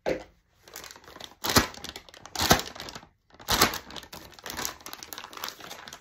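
Clear plastic piping bag filled with lightweight spackle crinkling as it is shaken and handled to settle the filling toward the tip, with three louder crackles about a second apart.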